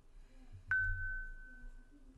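A single bell-like ding about two-thirds of a second in: a sharp strike followed by one clear, steady tone that rings on for more than a second before fading.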